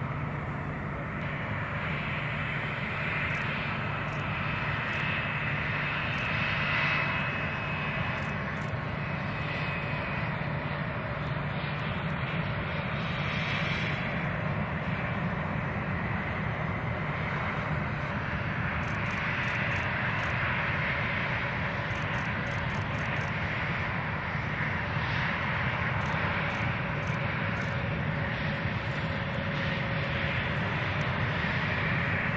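Twin TF34 turbofan engines of A-10 Thunderbolt II jets running on the airfield: a steady rush of jet noise with a high whine that swells and fades as the aircraft move.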